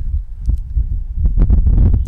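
Wind buffeting a handheld microphone outdoors: a loud, uneven low rumble that surges and dips.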